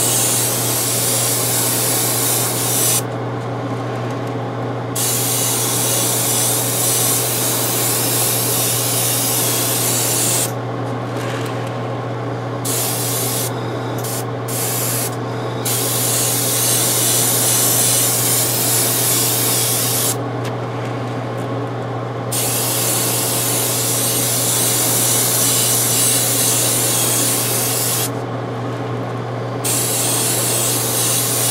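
Grey primer being sprayed onto a plastic model in long hissing passes, stopping briefly several times between passes, over a steady low hum.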